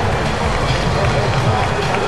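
Indistinct voices of people around a boxing ring over a steady wash of venue background noise, with no clear words.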